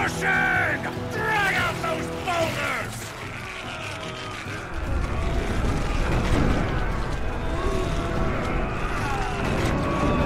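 A huge boulder dragged out of a gateway by ropes, a heavy low rumbling and grinding that starts about five seconds in and carries on loudly. Voices are heard over music before it.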